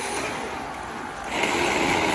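An FRC competition robot driving itself across the floor, its electric drive motors and wheels running. It gets louder about a second and a half in.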